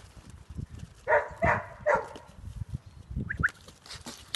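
Three short animal calls in quick succession about a second in, then two brief high-pitched yips a little after three seconds, with faint thuds of movement in the pen between them.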